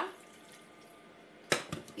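Warm water poured from a metal pot into a bowl of corn flour, a faint trickle; then, about one and a half seconds in, a sharp knock as the metal pot is set down on the countertop, followed by a few small clicks.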